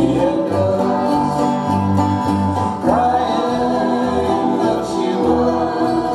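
Live acoustic band playing in a bluegrass style: banjo, fiddle, acoustic guitars and upright bass, with singing over them.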